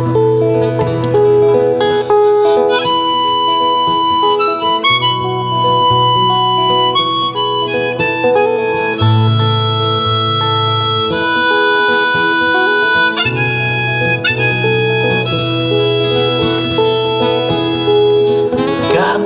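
Blues harmonica solo over strummed acoustic guitars. The harmonica plays long held notes, with several notes bent up in pitch.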